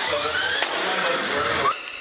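Small electric motors of toy remote-control cars whining and rising in pitch as they speed up, over a steady hiss; the sound cuts off suddenly near the end.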